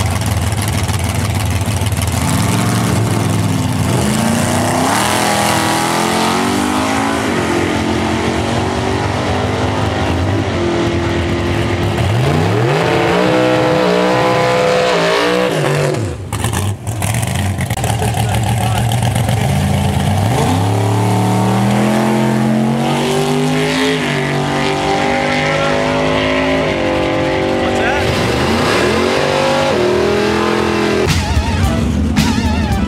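Drag-racing Plymouth Duster with a 440 big-block V8 launching and accelerating hard down the strip. The engine climbs in pitch again and again as it runs through the gears. The sound drops out briefly about halfway through.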